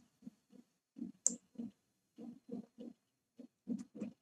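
Soft, irregular tapping of computer keyboard keys, about three taps a second, with one sharper click about a second in.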